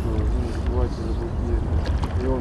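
Steady low rumble of outdoor ambience, with faint voices of people talking in the distance.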